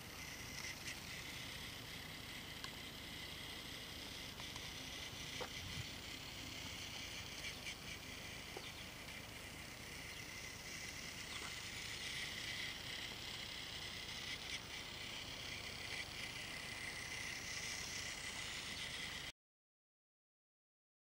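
Battery-powered toy Thomas engine running around a plastic track, its small motor whirring steadily, with a few light clicks and outdoor background noise. The sound cuts off abruptly near the end.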